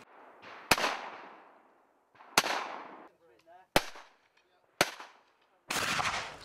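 Four shotgun shots at clay targets, each with a trailing echo; the last two come about a second apart.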